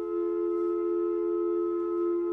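Closing chord of a hymn accompaniment held steady on a keyboard instrument with a flute-like tone, several notes sounding together.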